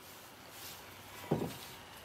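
Faint sizzle of a meat filling cooking in a wok on a gas burner, with one dull thump about 1.3 seconds in, like a dish being set down on a wooden counter.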